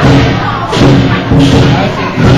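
Lion-dance drum beating a steady rhythm, about three beats every two seconds, with cymbal clashes on some of the beats, over crowd voices.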